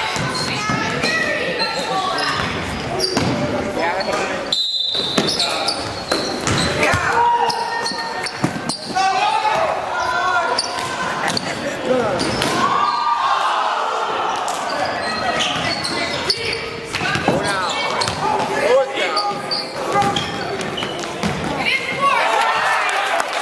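Basketball game sound in a school gym: the ball bouncing on the hardwood floor as players dribble, over indistinct shouting voices of players and spectators. The sound drops out for a moment about four and a half seconds in.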